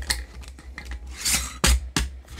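Two-piece metal Ball canning lid and screw band being put on a glass mason jar and twisted down: metal-on-glass scraping as the band runs along the threads, then two sharp clicks near the end.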